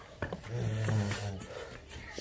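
A Holstein Friesian cow gives a low, short, closed-mouth moo lasting about a second.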